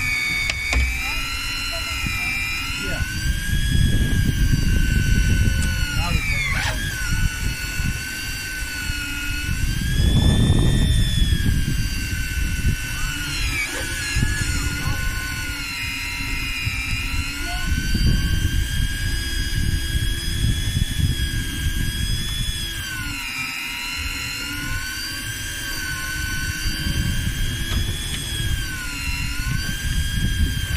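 Daiwa electric fishing reel winding in line under a heavy load, its motor whining steadily and dipping in pitch now and then as the fish on the bottom pulls against it. Bursts of low rumbling noise come and go under the whine.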